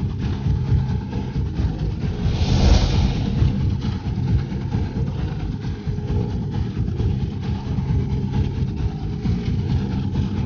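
Low, steady droning of a suspense background score, with a brief swelling whoosh about two and a half seconds in.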